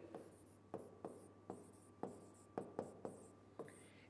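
Red marker pen writing on a board: faint, short stroke and tap sounds, about eight of them, as a word is written.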